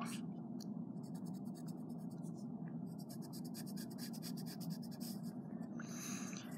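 Pencil scratching on drawing paper in quick, short, evenly repeated strokes while shading a gradient. The strokes come in two long runs with a short break about two seconds in.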